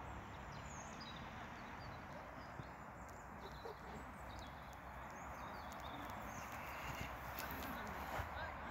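Faint outdoor ambience on an open grass pitch: a steady background hiss with a few faint, high, short chirps and occasional light ticks.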